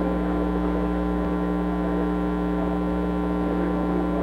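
Steady electrical mains hum with a buzzing row of overtones, unchanging throughout.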